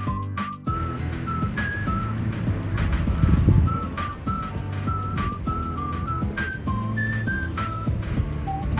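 Background music: a light tune with a whistle-like lead melody of short notes over a steady beat and bass, with a low rumble swelling briefly about three seconds in.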